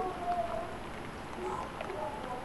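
Steady hiss of rain falling during a thunderstorm, an even wash of noise without any distinct strikes.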